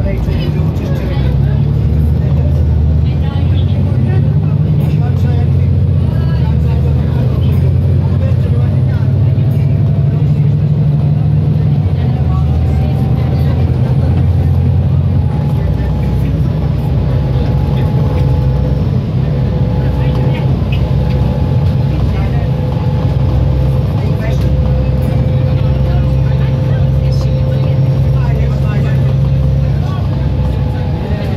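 Volvo B7TL double-decker bus's engine and transmission heard from inside the passenger saloon while under way: a steady low drone with a faint whine that rises slowly in pitch, then holds. The engine note changes about halfway through.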